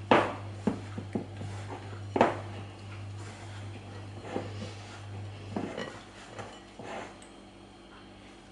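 Hands kneading crumbly cocoa shortcrust dough in a glass bowl, with soft rubbing and sharp knocks against the glass. The two loudest knocks come right at the start and about two seconds in. A low steady hum stops about two-thirds of the way through.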